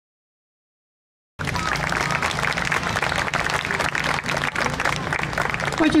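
An audience applauding, cutting in abruptly after about a second and a half of silence and holding steady; a man's voice starts just at the end.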